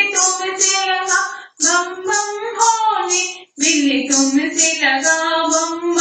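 A high voice singing a dehati folk Shiva bhajan in long held notes, broken by two brief pauses, over a steady bright ticking beat.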